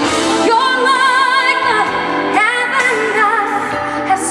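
Female vocalist singing a pop ballad live over band accompaniment, holding two long notes with a wide vibrato.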